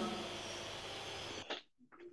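Quiet, even background hiss of the room and microphone. About one and a half seconds in, a faint click comes, then the sound cuts out to dead silence for about half a second, as when a noise gate or call software mutes the line.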